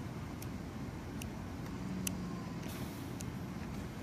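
Several light clicks, about a second apart, from the front-panel buttons of a ReVel transport ventilator as its display is stepped through to the I:E ratio screen, over a steady low background rumble.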